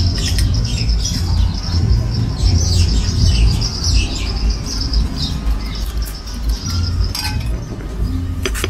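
Birds chirping over a steady low rumble.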